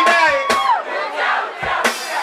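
Live mugithi band performance: a long, high held vocal call that rises and then falls away over crowd noise. The drums and bass drop out for about a second and a half, and drum strikes come back near the end.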